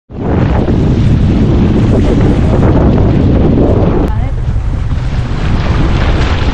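Wind buffeting the microphone, a loud, steady low rumble over water noise from a boat out on open, choppy water. About four seconds in, the sound suddenly thins out in the middle range.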